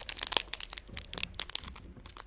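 Foil wrapper of a Pokémon TCG Evolutions booster pack crinkling and crackling in irregular sharp bursts as fingers grip and pull at its top seam to tear it open.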